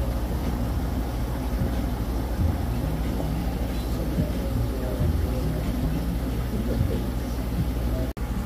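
Steady low drone of running aquarium equipment in a fish store, with faint voices under it.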